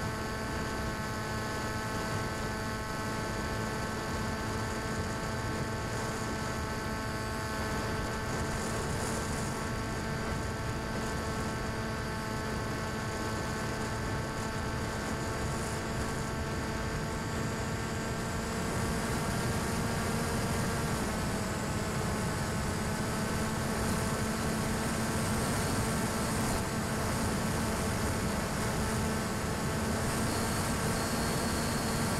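The electric motor and propeller of the Tek-Sumo RC plane, running with a steady droning tone over a rushing hiss. The pitch drops slightly about two-thirds of the way through.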